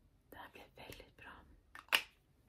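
A woman whispering softly under her breath for about a second, then a short sharp click just before the end, the loudest sound here.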